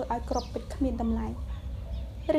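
A woman's voice reading aloud in Khmer in short phrases, with a few high bird chirps behind it.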